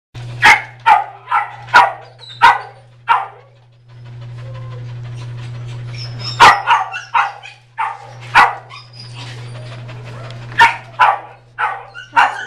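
Dogs barking in animal-shelter kennels: about a dozen sharp, short barks in uneven runs, a quick series in the first three seconds, a pause, then more from about six seconds in. A steady low hum runs underneath.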